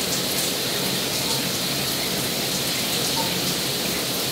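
A hot shower running: a steady spray of water falling onto the shower floor.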